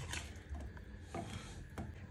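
Faint kitchenware handling: a few light knocks and clicks against a low background hum.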